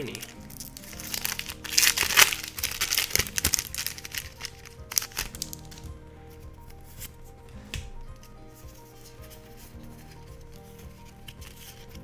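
A foil Pokémon booster pack wrapper is torn open and crinkled, loudest over the first few seconds with one more crinkle about five seconds in. Quieter shuffling of trading cards follows, over soft background music with steady held notes.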